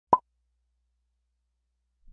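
A single short pop right at the start, then silence.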